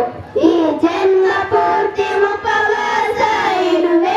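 Children singing a song together into microphones, amplified over a sound system, with a brief breath just after the start and then long held notes.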